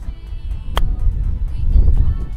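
A golf club striking the ball on a chip shot: one sharp click about three-quarters of a second in, over background music with a deep bass.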